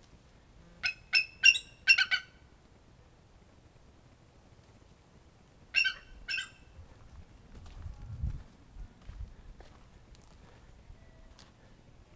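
Captive bald eagle calling: a quick series of five short, high-pitched squeaky calls, then two more a few seconds later.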